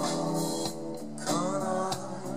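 Live rock band playing an instrumental passage: electric guitars over drums, with some notes bending in pitch.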